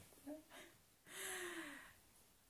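A soft breathy gasp, quietly voiced with a falling pitch, about a second in and lasting under a second, after two brief faint vocal sounds.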